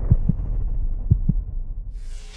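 Outro sound effect: two heartbeat-like double thumps, low and about a second apart, over a steady low rumble.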